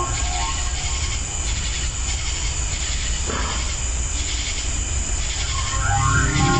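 Ambient soundscape texture: a steady bed of hiss over a low rumble with no clear melody, and a brief swell about three seconds in.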